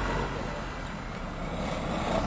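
Land Rover Defender's engine running as it crawls off-road up a rutted dirt gully, a steady low rumble that dips slightly in loudness midway.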